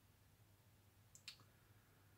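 Near silence: quiet room tone, with one faint, short click a little after a second in.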